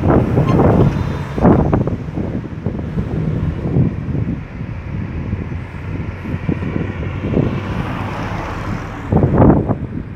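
Cars driving past close by on a narrow road, one near the start and another swelling up and going by near the end, over a steady rumble of wind on the microphone.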